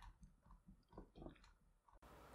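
Near silence, with faint soft ticks and rubbing from a paracord-braided handle being rolled under a wooden board, including two slightly louder ticks about a second in.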